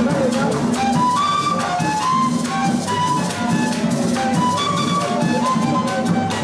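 Live Colombian gaita music: a gaita, the long duct flute of the Caribbean coast, plays a melody of short notes, some bending in pitch, over steady hand drumming and maracas.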